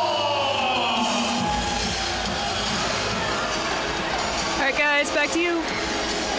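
Ice rink ambience during a stoppage in play: music over the arena's PA system with indistinct, echoing voices. A short raised voice comes through about five seconds in.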